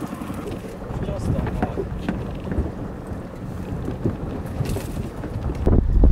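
Strong wind buffeting the microphone in rough open-water conditions, a steady low rumble that surges louder near the end.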